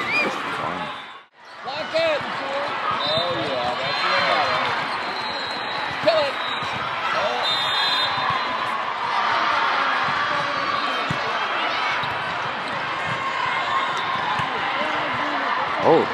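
Volleyball game sounds in a large sports hall: many spectators' and players' voices calling and cheering over one another, with the ball being struck during the rallies. The sound drops out briefly about a second in.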